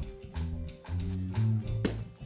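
House band playing an instrumental groove: a bass guitar line under regular drum hits, with a sharp knock near the end.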